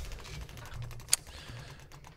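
Prize wheel spinning, its pegs clicking rapidly against the pointer in a light, even run, with one sharper click about a second in.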